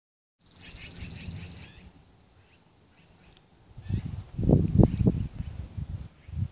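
Thunder rumbling overhead in uneven low surges through the second half. Near the start there is a high, fast trill about a second long.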